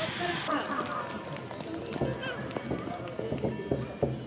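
Outdoor ambience of people's voices chattering nearby. A steady high hiss cuts off suddenly about half a second in, and short knocks follow from about two seconds in.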